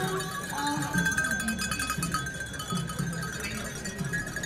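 Metal bells clanking in a quick rhythm as a traditional procession walks past, with crowd voices underneath.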